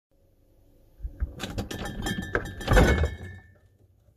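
A fridge door being opened from outside, with a run of clinks, rattles and knocks from glass and cans on the door shelves, loudest just under three seconds in.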